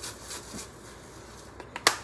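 Seasoning rattling out of a shaker jar, fading out early, then a single sharp click near the end from a spice bottle's plastic cap being handled.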